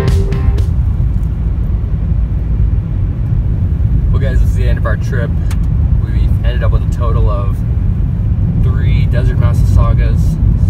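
Road noise inside a car driving on a gravel road: a loud, steady low rumble of the tyres on the gravel carried into the cabin.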